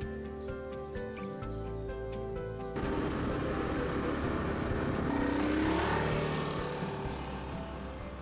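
Background music for the first few seconds, then a cut to a small motorcycle riding by: engine and road noise swell to a peak with the engine note rising, then fade away.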